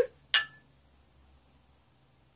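Two glass beer glasses clinked together once in a toast, a single sharp clink with a short ring, about a third of a second in.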